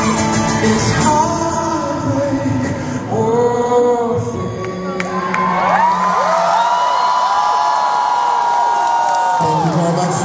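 Live acoustic performance: a man singing with a strummed acoustic guitar in a large hall, with whoops from the audience. About halfway through the guitar falls away under a long held vocal line with many voices sliding over it, and the guitar comes back just before the end.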